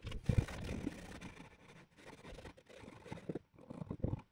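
Cloth wiping oil finish over a wooden box: an irregular scraping rub in uneven strokes, loudest in the first second and thinning out near the end.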